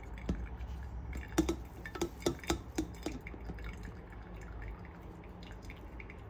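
Brewed coffee dripping from a paper-filter pour-over dripper into the server below: a quick run of six or seven sharp drops between about one and a half and three seconds in, then a few fainter drips.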